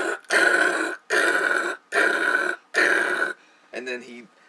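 A man imitating gunfire with his mouth: a string of harsh, hissing vocal bursts, each about two-thirds of a second long, coming a little faster than one a second. A brief bit of voice follows near the end.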